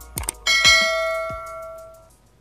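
Subscribe-button sound effect: a few short mouse clicks, then a bright bell chime about half a second in that rings on and fades out over about a second and a half.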